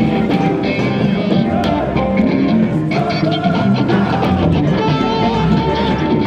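Rock music with guitar, playing loud and steady.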